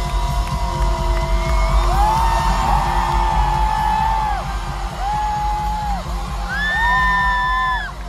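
Live pop band music over an arena sound system, heard from the crowd: heavy bass under long held notes that slide up into pitch and fall away at their ends, the strongest near the end, with fans whooping.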